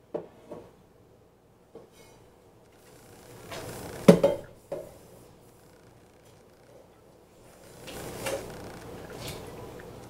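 Dishes being washed by hand in a kitchen sink: scattered clinks and knocks of dishes and glassware, the loudest cluster about four seconds in, with a rise of rushing noise late on.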